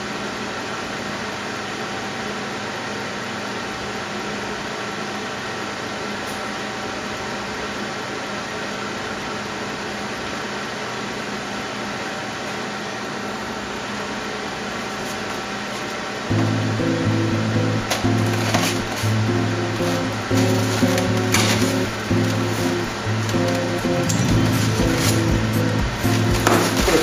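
A small electric fan inside a homemade styrofoam-cooler ice air cooler running with a steady hum. About 16 seconds in, background music with low notes starts over it, and light knocks and clicks come as the foam cooler is handled.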